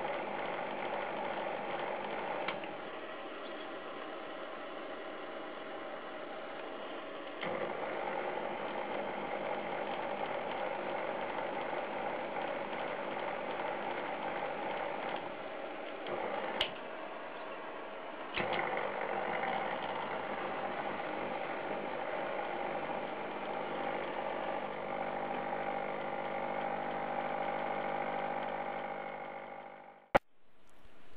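Small metal lathe running, its motor and gears giving a steady whirring drone. The drone drops in level a couple of seconds in and comes back up about seven seconds in. There is a sharp click about halfway through, after which it steps up again.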